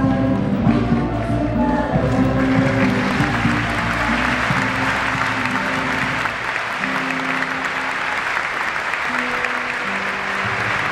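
The last bars of Bolivian folk music with group singing, which ends about two seconds in, then sustained audience applause.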